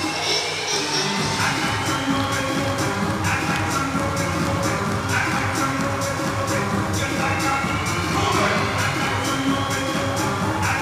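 Recorded pop dance music with a steady beat, the routine's soundtrack.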